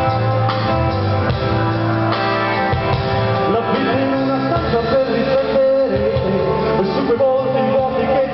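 Rock band playing live: electric guitars, bass and drums, with a man singing into the microphone from about halfway through.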